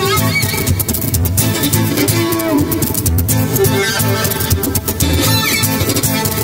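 A violin and flamenco guitar duo playing an instrumental piece: rhythmic strummed guitar chords under a violin melody with sliding notes.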